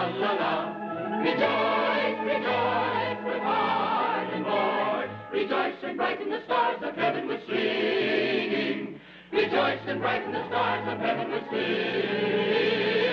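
Mixed choir of men and women singing with electric organ accompaniment, low sustained bass notes under the voices, with a short break about nine seconds in.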